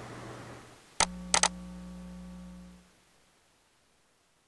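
Clicks on a computer keyboard and mouse while logging in: one click about a second in, then two in quick succession, over a faint low hum that fades out after about two seconds.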